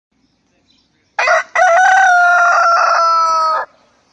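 A rooster crowing: a short first note about a second in, then one long call that falls slightly in pitch and stops just before the end.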